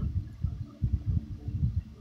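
Low, irregular rumble and soft thumps from a handheld phone's microphone being handled close to the face.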